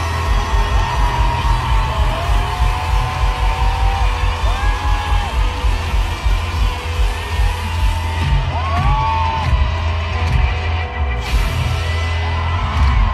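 Live pop-rock band music played over arena speakers, with a heavy low beat pulsing about twice a second and sustained melodic lines above it. Crowd whoops and yells mix in.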